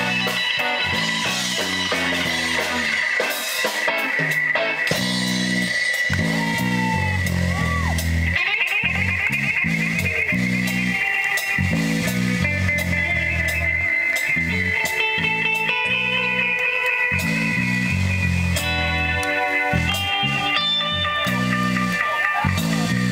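Live band playing an instrumental jam: electric guitar lines over electric bass and a drum kit, with a bent guitar note about seven seconds in.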